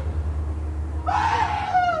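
A person's high-pitched cry starts about halfway through, held for about a second and falling slightly in pitch, over a low steady hum.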